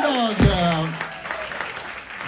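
Audience applauding and cheering as the last sung note and guitar chord die away, with a single sharp thump about half a second in; the applause then fades.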